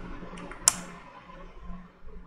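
Computer keyboard keystrokes: two light taps about half a second in, then one sharper, louder key press.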